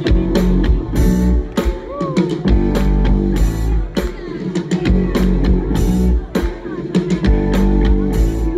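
Live band music: drum kit keeping a steady beat over bass and guitar chords, with a few short gliding vocal or guitar notes.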